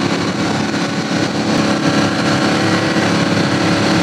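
Motorboat engine running under way, drowned in a loud, steady rush of wind and water noise.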